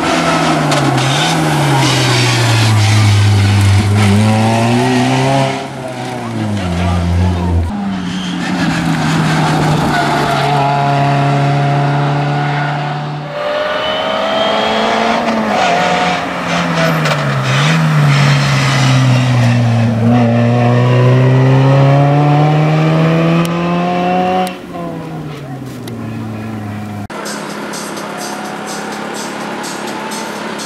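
Suzuki Swift Sport N2 rally car's 1.6-litre four-cylinder engine revving hard, its pitch climbing through the gears and dropping sharply at each shift or lift for a corner, several times over. Near the end the sound falls to a quieter, steadier engine note.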